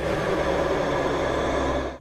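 A steady, dense rumbling noise, heavy in the low end, that cuts off suddenly at the end.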